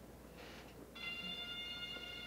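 Ceremonial military band music begins about a second in with several steady held brass notes, after a brief rush of noise about half a second in.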